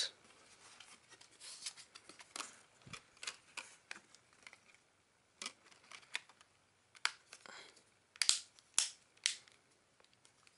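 Back case of a Blu Studio Energy phone being fitted and pressed along its edges: scattered light clicks and handling rustle, then three sharper snaps about half a second apart near the end as the case's clips snap into place.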